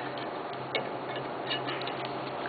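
A few faint, sharp metallic clicks from pliers gripping and twisting a plug-welded sheet-metal coupon held in a bench vise. There is one click a little under a second in and a small cluster near the end, as the jaws bite and the metal shifts while the weld holds.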